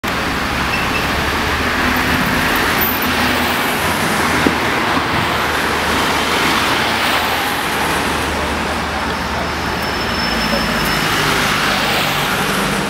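Steady road traffic on a busy city street: a continuous rumble of passing cars and other motor vehicles.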